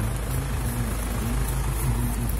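Motor vehicle engine running nearby in street traffic: a steady low rumble with an even hum.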